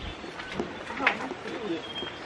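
A bird calling in short, low, pitched phrases, with faint voices in the background.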